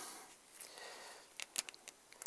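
Quiet room with a few faint, short clicks about one and a half seconds in: handling noise from a motorcycle brake caliper and its carrier being turned over in gloved hands.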